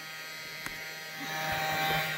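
Small battery-powered handheld insect vacuum (aspirator) running with a steady motor hum, with one brief click about two thirds of a second in.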